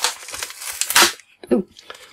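Plastic wrapper of a Topps Champions League sticker packet crinkling and tearing as it is pulled open, in noisy bursts at the start and about a second in.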